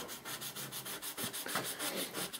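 Sandpaper rubbed by hand over carved wood in quick, even back-and-forth strokes.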